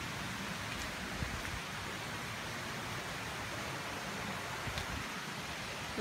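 A steady, even hiss of water, like rain or running water in the forest, with a few faint clicks.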